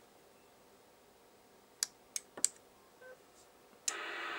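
Sharp clicks of buttons being pressed on a Team SR316D selcall unit: three in quick succession a little under two seconds in, then a faint short beep and one more click. At the very end the squelch of the second CB radio opens with a steady hiss, as the selcall signal wakes it from standby.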